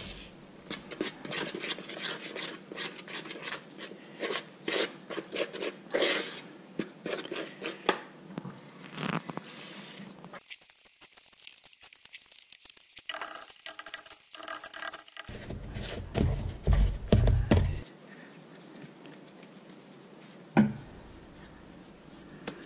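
Hands mixing flour and water into a stiff dough in a bowl: irregular squishing, scraping and light clicks. A few heavier low thumps come a little past the middle, with one more knock near the end.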